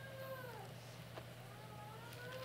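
Faint, high mewing calls, each rising and then falling in pitch: one trailing off in the first moments and another starting near the end, over a steady low hum.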